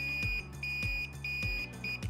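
Trailer-wiring circuit tester beeping with a high, steady tone that switches on and off about one and a half times a second, pulsing in time with the flashing left turn signal: the left-turn circuit in the new 7-way socket is live and wired correctly. A low, regular beat of background music runs underneath.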